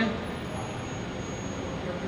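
Steady city-street traffic noise, an even background hum of vehicles with no distinct events.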